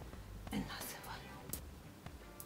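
Soft rustling of fox fur as a champagne glass is handled and wrapped in it, with one light, sharp click of the glass about one and a half seconds in.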